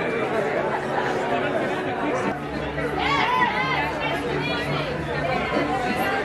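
Indistinct chatter of several people talking over one another, with one voice rising above the rest about halfway through.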